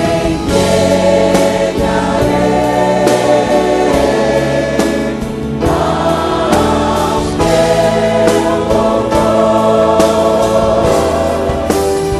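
Gospel choir singing a worship song with a live band of keyboards, guitars and drum kit, steady and full throughout.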